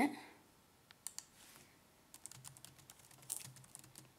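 Typing on a computer keyboard: a few scattered key taps, then a quick run of keystrokes near the end as a single word is typed in.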